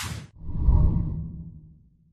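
Logo-intro sound effect: a quick whoosh, then a low swell that fades out over about a second and a half.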